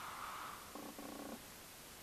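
A man's faint, creaky hum, a brief 'mm' of hesitation about a second in, over near-quiet room tone.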